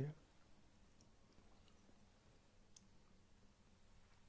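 Near silence: quiet room tone with a few faint, small clicks.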